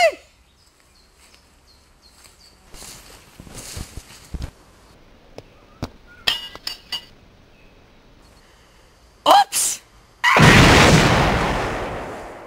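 An explosion about ten seconds in: a sudden, very loud blast that fades away over two or three seconds. Before it there are only faint rustles and clicks, and a brief shout just ahead of the blast.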